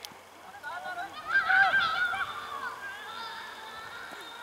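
Children's high-pitched shouts on a football pitch, several voices calling over one another. They are loudest from about one to two seconds in, then trail off into lighter calls.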